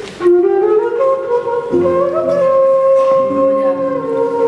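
A flute playing a slow melody of long held notes, coming in sharply just after the start, with lower sustained notes from the accompaniment joining about halfway through.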